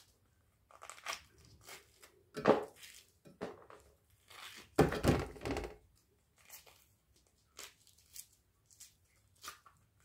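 Mandarin tangerine peel being torn off by hand in short, irregular rips and crackles, with louder bursts of handling noise at about two and a half and five seconds in.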